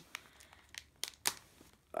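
Plastic zip-top bag being pulled open and handled: soft crinkling broken by about half a dozen sharp clicks.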